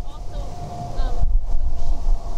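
Wind buffeting an outdoor microphone: a loud, uneven low rumble that rises and falls in gusts, with faint voices behind it.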